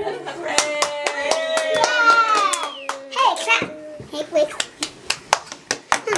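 A small group clapping by hand, thick at first and thinning out over the last couple of seconds, with voices over it.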